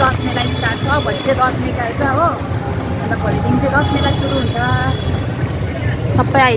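A woman talking over the steady low rumble of a moving rickshaw.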